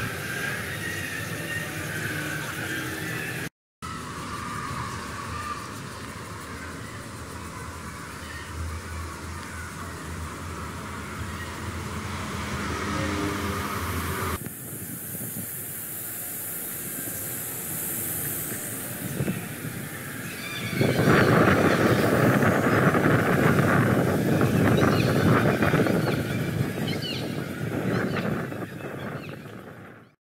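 Outdoor city ambience from a handheld camera, changing abruptly at each edit; in the last third it grows louder with a dense, steady rush of road traffic.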